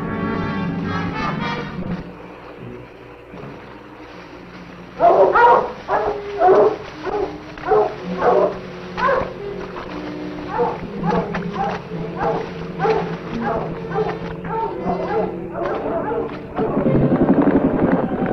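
Dogs barking repeatedly over an orchestral film score, about one to two barks a second, starting about five seconds in. Near the end the barking gives way to a louder swell of the music.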